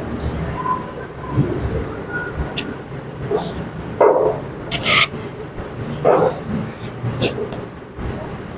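Indistinct voices in the background, in short scattered bursts, with a few brief sharp noises among them.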